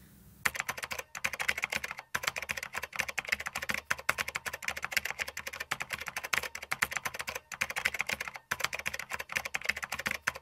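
Typing sound effect: rapid, continuous key clicks start about half a second in, with a few short breaks. It accompanies on-screen text being typed out letter by letter.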